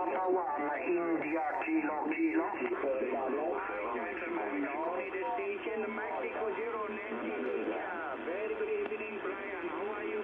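Single-sideband amateur radio voices from a pile-up, heard through a Yaesu FRG-7700 communications receiver: thin, narrow-band speech over a steady hiss, with the words indistinct.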